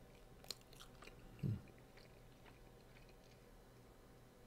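A person faintly chewing a bite of hamburger. There is a small click about half a second in and a short hummed "mm" about a second and a half in.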